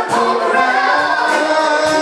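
Live band music with a woman singing lead over electric guitar and drums, held sung notes in a reverberant hall.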